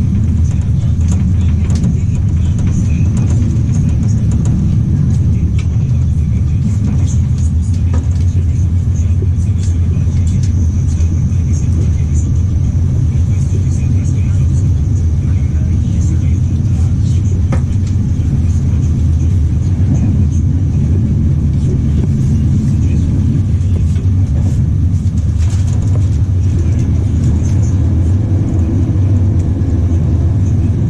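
Interior of an Intercity passenger coach at running speed: steady low rumble of the wheels on the track, a thin high hiss over it and a few scattered light clicks.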